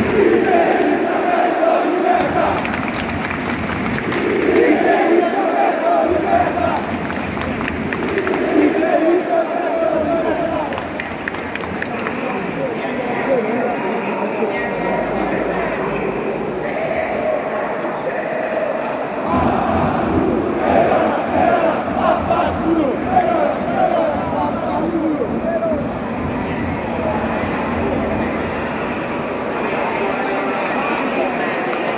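Football crowd in a stadium chanting in unison, sung phrases of about two seconds repeating over and over above a steady hubbub of many voices.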